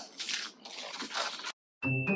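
Scissors snipping through a foil-lined potato chip bag, with the plastic crinkling and crunching in quick sharp strokes for about a second and a half. It cuts off suddenly, and bell-like mallet-percussion music starts just before the end.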